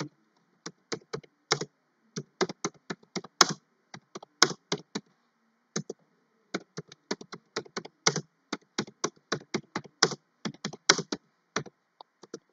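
Typing on a computer keyboard: an irregular run of quick key clicks, with a short pause about halfway.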